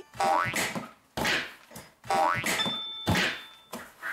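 Comedic cartoon sound effects: a rising, boing-like whistle glide twice, about two seconds apart, with thumps in between. They mark a toddler's exaggerated pretend fall.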